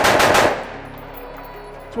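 AR-style rifle firing a rapid string of shots that stops about half a second in, followed by the report dying away.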